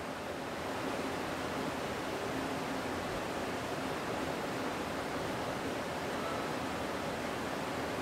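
Steady background hiss with no distinct sounds in it.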